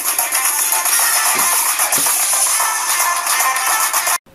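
A song playing through a fidget spinner's tiny built-in Bluetooth speaker, thin and tinny with almost no bass.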